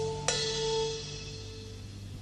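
A live rock band's last chord rings out and dies away, with one sharp hit about a third of a second in. By the second half only a faint tail is left.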